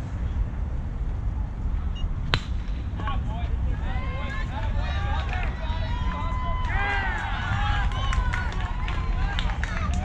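A single sharp crack of a youth baseball bat hitting the pitch about two seconds in. Players and spectators then shout and cheer over a steady low rumble.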